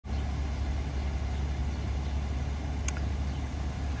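A car engine idling steadily, a low even hum, with one faint click about three seconds in.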